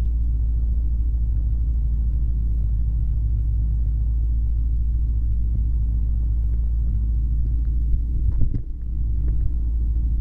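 Flexwing microlight's engine running steadily as a low drone, with a brief bump and dip in level about eight and a half seconds in.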